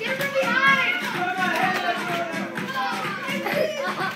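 Children shouting and chattering as they play, with music in the background.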